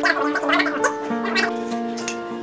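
Background music with steady held notes. Over it, for the first second and a half, pulp-cardboard egg trays crackle and tap as they are pulled apart and set down.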